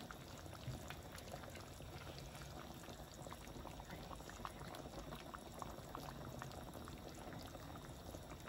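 Chicken curry boiling in a large pot: a steady, faint bubbling with many small pops.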